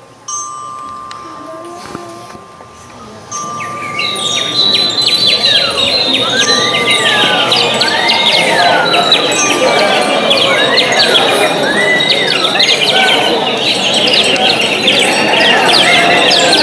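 Concert band in performance, playing effect sounds. A steady high held tone fades out about six seconds in. From about four seconds in, a loud, dense shimmer of chimes and tinkling percussion builds, with repeated whistle glides that rise and fall over it.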